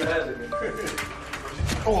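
Men laughing and talking, with background music.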